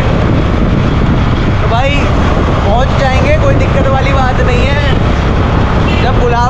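Wind rushing over the microphone on top of a steady vehicle engine rumble while moving along a road, with a voice briefly heard a few times.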